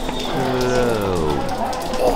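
A person's voice draws out one long, slow sound that slides down in pitch over about a second: a mock slow-motion voice during a slow high five. Under it runs a steady background hiss.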